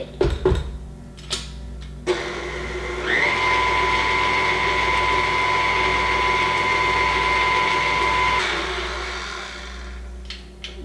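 Tilt-head stand mixer with a dough hook, mixing the first cup of flour into yeast water. A few knocks come first. The motor starts about two seconds in, steps up to a steady whine a second later, and winds down near the end.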